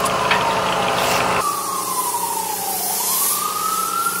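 A siren wailing: one tone sliding slowly down and then back up, over a low street hum that drops away about a second and a half in.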